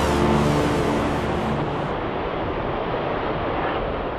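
The last sustained chord of orchestral music ends about a second and a half in, under a loud rushing jet roar from an F-111 passing overhead, which then slowly fades away.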